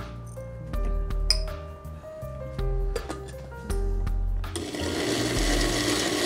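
Background music, then about four and a half seconds in a countertop blender starts up and runs steadily, blending a thick load of sautéed rocoto pepper, onion, peanuts and fresh cheese in its glass jar.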